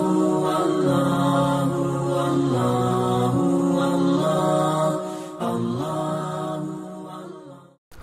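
Channel intro music: long, held, chant-like tones that step between a few pitches, fading down over the last few seconds and stopping just before the end.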